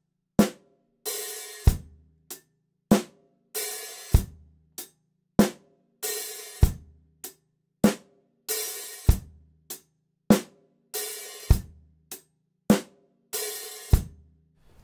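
Drum kit playing a slow rock groove, repeated: closed hi-hat eighth notes with bass drum and snare, a bit under two strokes a second. Every fourth stroke is an open hi-hat that rings on as a longer hissing wash, falling on the 'and' of two and four, before the hats close again.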